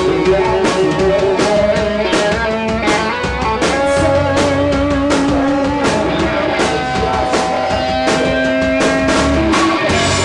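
Live indie rock band playing: a drum kit with frequent sharp hits under sustained, held guitar notes.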